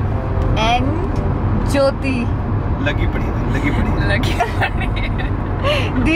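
Steady low rumble of a car's engine and road noise heard inside the cabin, with a woman's giggles and a few short voice sounds over it.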